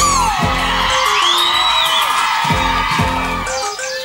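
A live pop band playing, with a long held high note over the drums and bass that bends up and back down about a second and a half in.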